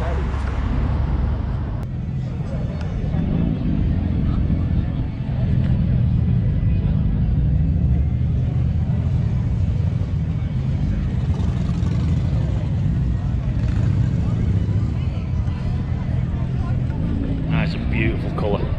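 Harley-Davidson motorcycle engines running, a steady deep rumble, with crowd voices in the background.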